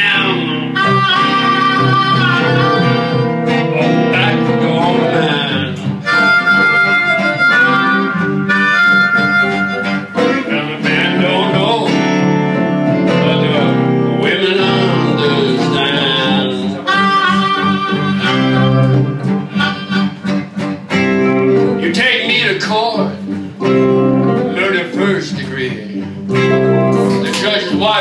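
Blues harmonica played cupped to a vocal microphone, wailing in long bending notes over a live blues band with electric guitars.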